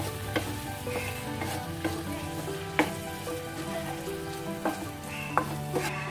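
Okra masala sizzling in a nonstick frying pan as it is stirred with a spatula, with a few sharp knocks of the spatula against the pan.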